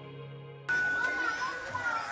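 Sustained background music notes dying away, then a sudden cut about two-thirds of a second in to children's voices calling out and playing, one high voice drawn out for nearly a second.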